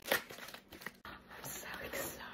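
A plastic bubble mailer being torn open and crinkled by hand, with a sharp tearing rip just after the start followed by continued rustling of the plastic.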